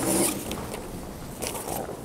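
Rustling and scraping handling noise close to a microphone: a rasping burst at the start and a shorter one about a second and a half in.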